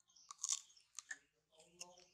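Baby macaque biting and chewing a crisp peeled green fruit: a few sharp crunches, the loudest about half a second in. A short voice-like sound comes near the end.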